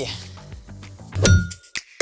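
Animated title jingle: sharp percussive hits with low thumps and bright bell-like dings that ring on, starting about a second in.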